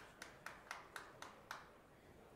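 Faint, sharp, regular clicking, about four clicks a second, which stops about one and a half seconds in, leaving near-silent room tone.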